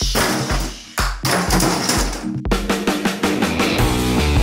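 Intro music: a driving drum beat, with a fuller rock backing coming in about two and a half seconds in.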